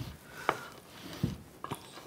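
Wooden spatula smoothing thick cake batter in a metal bundt pan: quiet, soft scraping with a few light taps, one about half a second in and a couple more near the end.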